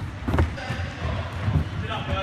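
Battle ropes slapping the wooden floor of a sports hall in heavy, irregular thuds, with people's voices in the hall behind.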